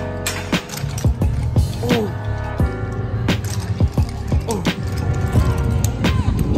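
Music playing over a loud low rumble that comes in just as the ride gets moving, with one short exclaimed "ooh" about two seconds in.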